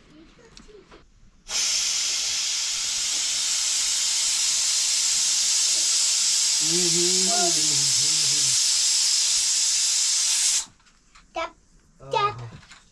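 A loud, steady hiss from the cooking, starting suddenly and cutting off about nine seconds later. A voice speaks briefly over it midway.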